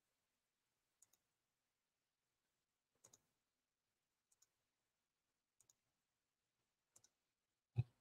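Faint double clicks of a computer mouse, five pairs spaced a second or more apart, then a single louder, deeper thump near the end.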